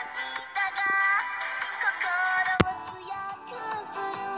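Anime idol pop song: high, processed female vocals sing a melody with held, bending notes over electronic backing. A single sharp click cuts through about two and a half seconds in.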